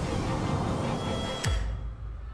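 Movie-trailer soundtrack music with sustained tones. About one and a half seconds in it ends on a sharp hit and a deep low boom.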